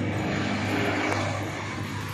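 Street traffic noise: a vehicle engine's steady low hum under a haze of road noise.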